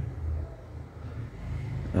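Steady low background hum and rumble, with no distinct event standing out.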